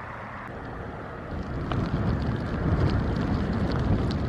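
Wind blowing across the microphone, a gust building about a second in to a heavy, low rumble.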